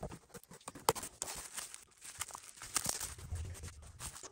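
Cardboard card-storage box being handled and opened by hand, then bubble wrap pulled out and unfolded: faint scattered taps, clicks and plastic crinkles.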